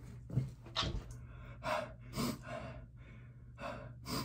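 A man breathing hard in short, sharp breaths and gasps, about five in all, in pain from the burn of an extremely hot chili-pepper chip.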